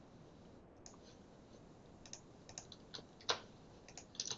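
Faint computer keyboard and mouse clicks: about half a dozen separate short clicks, the loudest a little past three seconds in, as the text in a code editor is selected to be pasted over.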